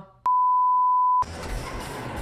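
A click, then a steady pure-tone beep lasting about a second that cuts off abruptly, followed by the film's soundtrack with a low rumble.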